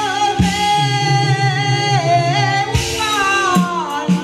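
Taiwanese opera (gezaixi) singing through a microphone and PA over instrumental accompaniment. The voice holds a long note, dips about two seconds in, then glides downward near the end, with a few drum strikes underneath.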